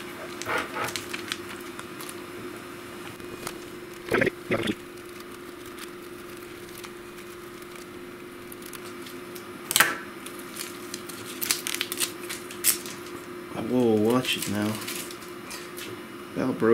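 Scissors snipping through thin plastic film and the film crinkling as it is handled, with a few sharp cuts in the second half, over a steady faint hum.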